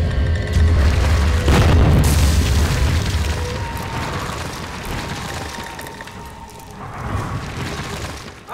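Logo-intro sound effects over music: a deep rumble and a crashing boom about a second and a half in as the animated wall breaks apart, then a slow fade and a short swell near the end.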